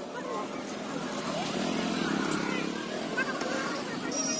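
A motorcycle engine running close by, with the voices of a market crowd around it.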